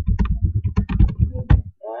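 Fast typing on a computer keyboard: a quick run of keystrokes that stops shortly before the end.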